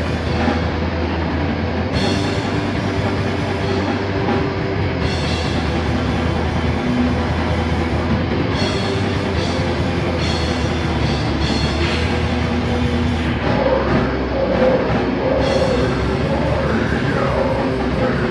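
Heavy metal band playing live: distorted electric guitar and drum kit, loud and continuous. About thirteen seconds in the music changes, and high notes that bend up and down in pitch come in over it.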